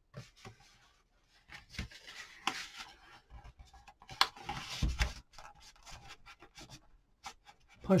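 A sheet of stiff cardstock folded by hand along its scored creases: quiet, irregular rustling and crackling of the paper as it bends and slides, with small clicks.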